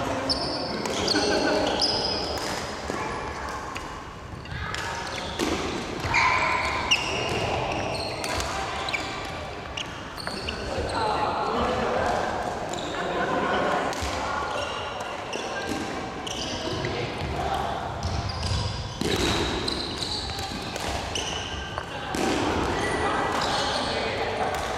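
Badminton doubles rally: racket strokes on the shuttlecock as short sharp hits, with sneakers squeaking on the wooden court floor, in a large reverberant sports hall.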